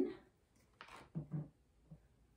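A felt-tip marker drawn briefly across a small plastic bottle about a second in, followed by two short, low voice hums in an otherwise quiet room.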